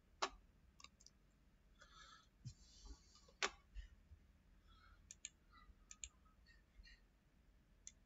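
Computer mouse clicking: about ten short, sharp clicks scattered over near silence, the loudest about three and a half seconds in, with a brief faint rustle just before it.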